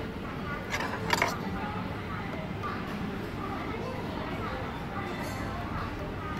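Two sharp clinks of a metal spoon against the soup bowl about a second in, over steady background chatter of people talking.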